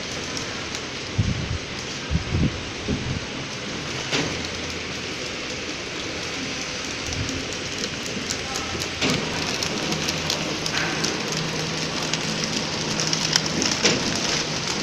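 Horizontal flow-wrap (pillow) packing machine running, wrapping bundles of long nylon cable ties in film: a steady hissing machine noise with many fine clicks. A few low thumps come in the first few seconds, and a low steady hum joins about halfway through.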